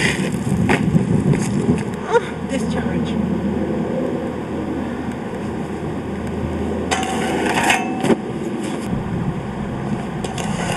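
Soap-shoe grind plates scraping on a ledge and a metal handrail: a short scrape at the start and a longer, louder scrape about seven seconds in, over a steady low rumble.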